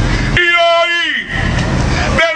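A man's voice shouting one long drawn-out vowel into a microphone at a rally, steady in pitch and then dropping off, about a second long. A loud, low rumble comes before and after it.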